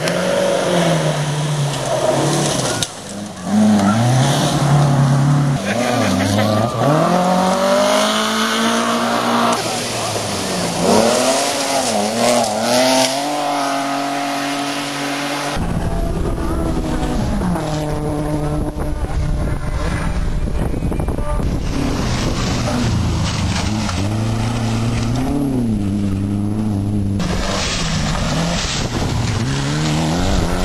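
Rally car engines driven hard, rising in pitch and dropping back at each gear change as the cars pass, over tyre and road noise. About halfway through the sound changes to a different car with a heavier low rumble.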